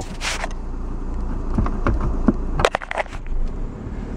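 Inside the cabin of a 2011 Caravan converted to a 2.0 common-rail TDI diesel: a low steady rumble from the engine and driveline. A brief hiss comes just after the start, and several sharp clicks and knocks come between about one and a half and three seconds in.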